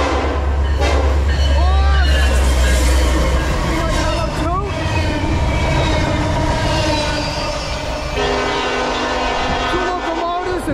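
A Norfolk Southern freight train passes close by. The EMD SD70ACe and GE ES44AC diesel locomotives rumble past in the first few seconds, then the wheels of a container well car roll by. A horn chord sounds steadily through the last two seconds.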